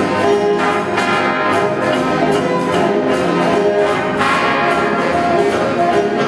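High school jazz band playing, with the brass section of trumpets and trombones out front in sustained, loud ensemble chords.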